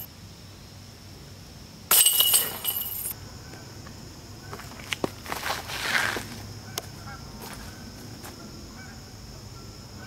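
A disc golf disc striking the hanging chains of a metal basket about two seconds in: a loud, brief jangle of rattling chains.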